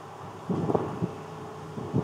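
Brief muffled low thumps and rustling about half a second in, with a smaller one about a second in, over a faint steady hiss.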